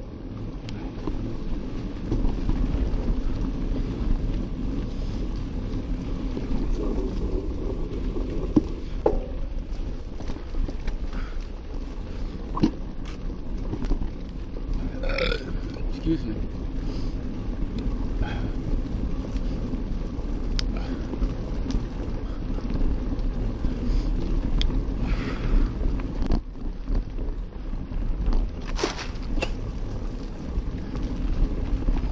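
Mountain bike rolling along a sandy dirt singletrack: a steady low rumble from the tyres and frame, with scattered clicks and rattles over bumps. There is a brief squeak about halfway through.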